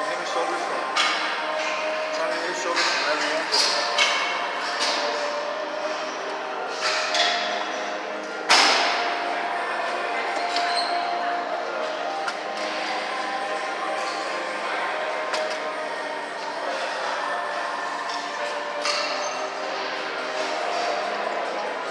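Busy gym hall sound: steady background music and distant voices, with scattered knocks of gym equipment and one loud, sharp clank about eight and a half seconds in.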